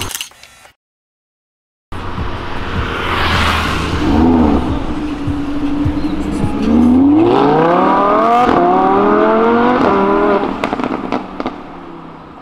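Lamborghini Huracán's V10 engine pulling away and then accelerating hard. The pitch climbs steeply, breaks once at an upshift, climbs again, and then fades as the car moves off. A short silent gap comes right at the start.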